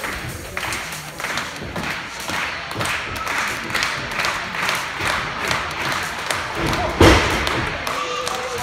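A wrestler's body landing on the wrestling ring's canvas with a loud thud about seven seconds in. Before it comes a run of lighter knocks, about two a second.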